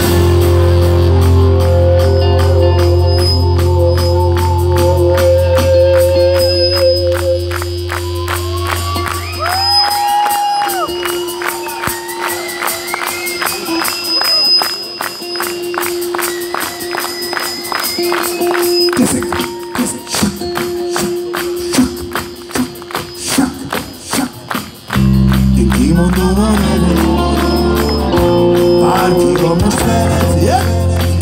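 Live rock band playing: full band with bass and drums, then a breakdown where the bass drops out and gliding, bending high notes ride over a steady beat, before the whole band comes back in near the end.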